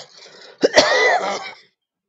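A person coughing or clearing their throat: one harsh burst starting about half a second in and lasting about a second, heard over an online voice-chat stream.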